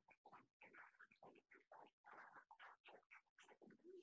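Near silence: room tone with faint, indistinct sounds.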